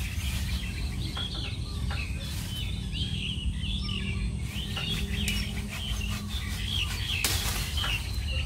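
Small birds chirping in quick repeated short notes throughout, over a steady low rumble. A few sharp rustling snaps of foliage being cut back with hand shears break in, the loudest near the end.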